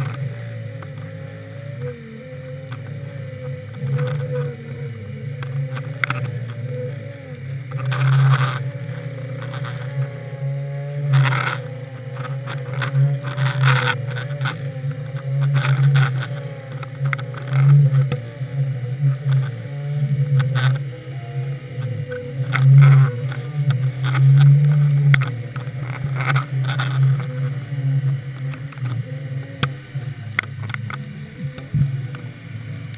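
Muffled underwater rumble picked up by a GoPro in its waterproof housing on a deep-drop rig, pulsing unevenly, with a faint wavering hum and a few knocks, the clearest about eight and eleven seconds in.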